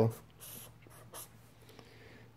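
A marker pen drawing lines on a paper notepad, faint.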